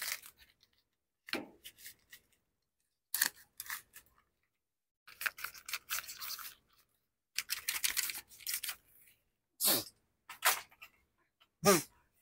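Clear plastic sleeve on a fishing rod crinkling and rustling in a string of short bursts, with two longer stretches in the middle, as the rod is handled and pulled from it.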